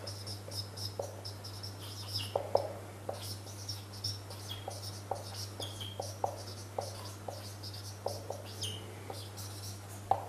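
Dry-erase marker squeaking and clicking on a whiteboard in short, irregular strokes as words are written by hand.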